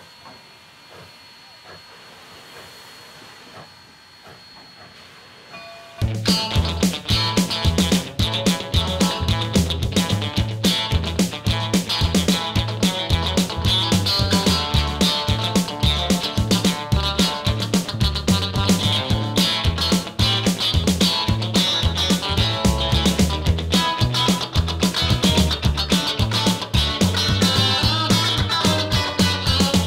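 For about the first six seconds, a narrow-gauge steam locomotive standing in steam gives a faint steady hiss with a thin high tone, a sound likened to breathing. Then loud background music with guitar and a steady beat cuts in abruptly and carries on to the end.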